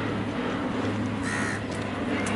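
A crow cawing briefly about a second and a half in, over a steady low hum and open-air background noise.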